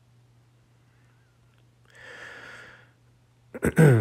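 A quiet stretch over a steady low hum, broken about halfway by a single soft breathy exhale lasting about a second. Near the end a man starts to clear his throat.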